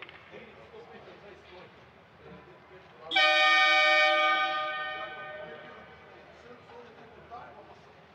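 Ice hockey arena horn sounding once, suddenly, about three seconds in. It holds one steady note for about a second, then rings out and fades in the hall over the next two seconds.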